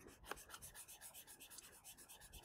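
Faint, quick back-and-forth scratching of a stylus on a drawing tablet, about six or seven strokes a second, as an area is scribbled in to shade it.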